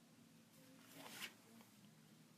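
Near silence: room tone with a faint steady hum, and one brief faint rustle about a second in.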